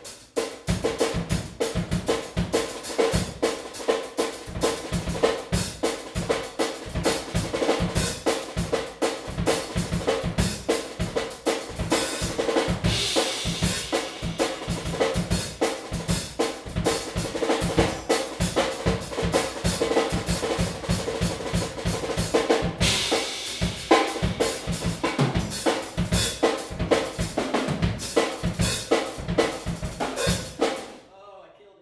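Acoustic drum kit played in a fast drum and bass groove: rapid, dense snare and bass drum strokes with cymbals, the snare ringing throughout. The cymbals swell brighter twice, about halfway through and again toward the end.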